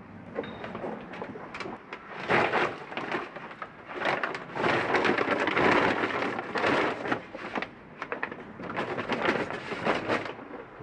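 A large sack being handled and crumpled, rustling in irregular bursts that are loudest in the middle few seconds.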